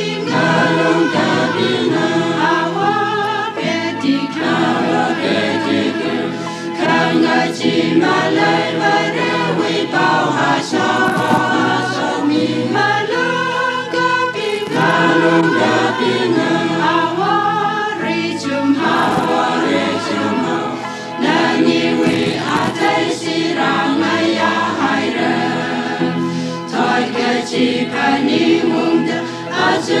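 A choir singing a gospel song, with several voices together in a continuous melody.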